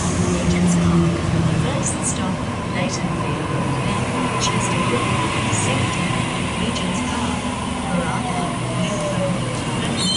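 Waratah Series 1 electric double-deck train, set A19, standing at the platform just after arriving: its on-board equipment hums steadily, with a faint tone sliding slowly down in pitch in the second half.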